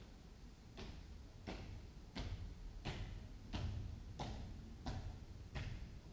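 Boots of the flag guard marching across a hard stone floor as the national flag is carried off: evenly spaced footfalls, about three steps every two seconds, starting about a second in and growing louder.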